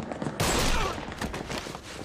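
Gunfire: a loud shot about half a second in, with a trailing echo, followed by several sharper cracks.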